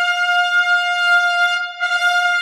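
A trumpet holding one high note, which breaks off briefly near the end and then sounds again.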